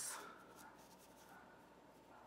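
Near silence, with faint rustling of fingers handling crocheted yarn.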